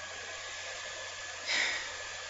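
Steady hiss of background noise, with one short breath taken about one and a half seconds in.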